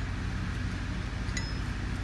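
Hand tool tightening the bolts of a multistage centrifugal pump's mechanical seal: a single faint metal clink with a short ring about a second and a half in, over a steady low hum.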